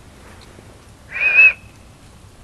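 A single short, high whistle lasting about half a second, slightly wavering in pitch, with some breathy air noise under it.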